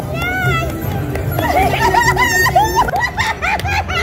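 Casino slot machine playing its bonus-round music and jingles during free spins, mixed with excited, high-pitched voices.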